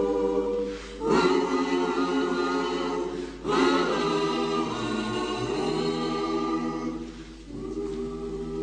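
A choir singing in long held notes, in phrases broken by short pauses about one second and three and a half seconds in and again near the end.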